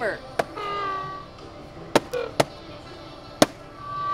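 Electronic sound effects from a toy lightsaber-training shield, like lightsaber sounds: four short sharp cracks, the loudest near the end, with brief tones between them over background music.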